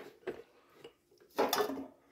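Glass jars being handled on a glass-ceramic hob: a few light clinks, then a half-second scraping clatter of glass about one and a half seconds in.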